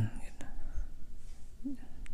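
Quiet room with faint handling noise: a single light click about half a second in and a short, low murmured voice sound near the end.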